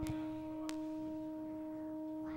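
Karaoke backing track holding one soft, steady note between sung lines, with a faint click at the start and another under a second in.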